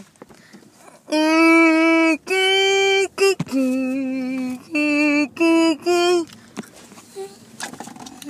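A voice singing a short tune of about seven held notes, the first two about a second each and the last ones shorter, starting about a second in.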